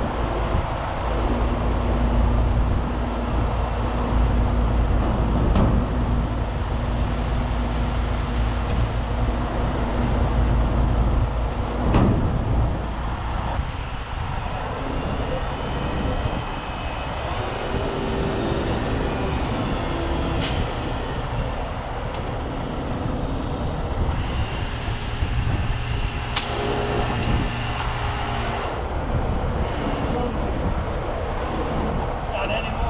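Diesel engine of a heavy rotator tow truck running steadily while its boom is worked, with a sharp knock about twelve seconds in, after which the low rumble eases.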